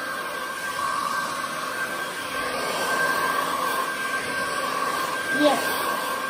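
Handheld hair dryer running steadily while blow-drying hair: a constant whine over the rush of air.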